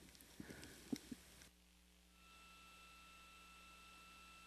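Near silence on the broadcast audio feed: a few faint clicks in the first second and a half, then a faint steady hiss carrying a thin high tone.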